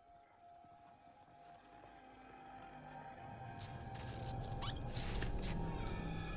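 TV drama soundtrack: a low musical swell building over several seconds, with a few faint high squeaks in the middle.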